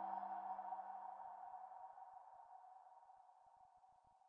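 The closing chord of a short logo jingle, held tones ringing on and fading away; the lowest tones die out about halfway through, leaving a faint high tone that fades almost to silence.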